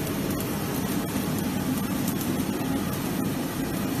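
Slitting-rewinding machine running: a steady mechanical hum as the film web runs over its rollers.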